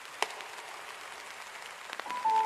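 Rain ambience: an even hiss of falling rain with scattered crackles and one sharp click about a quarter of a second in.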